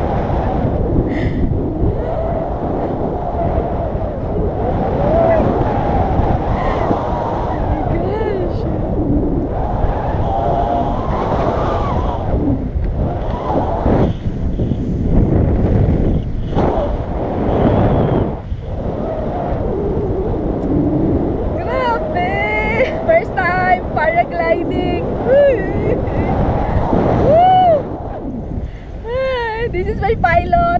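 Wind noise from the airflow of a paraglider in flight, a steady rush and rumble on the microphone. Voices break through in the last several seconds.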